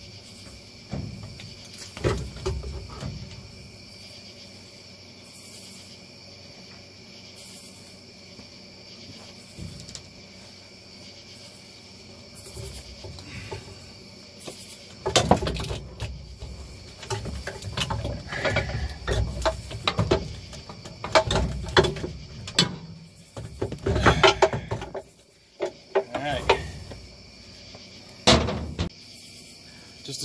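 Metal knocks, clunks and scraping as a 2009 Volvo S40's power steering rack is worked loose and pulled out past the body. A few knocks come early, then a dense run of sharp clatter through the second half.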